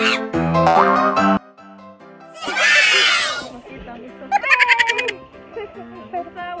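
Edited-in soundtrack: a bright keyboard tune that stops about a second and a half in, then a loud sweeping sound effect, then a springy cartoon boing with a fast wobble.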